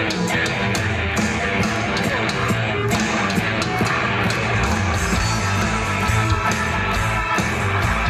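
Live rock band playing an instrumental passage, with electric guitar over a steady drum beat of about two to three strokes a second.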